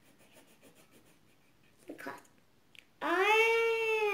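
A child's wordless vocal sound: mostly quiet at first with a short sound about two seconds in, then a long, loud sung note near the end that rises in pitch and holds.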